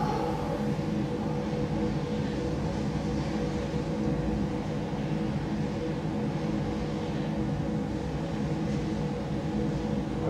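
A steady low drone of several held tones over a rumble, without a beat or breaks.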